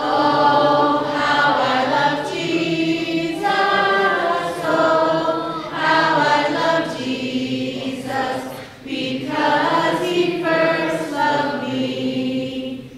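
Children singing an action song together, led by a woman singing into a microphone, in phrases with brief pauses between them about every four to five seconds.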